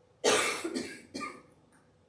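A woman coughing twice into her elbow, a longer cough followed by a shorter one.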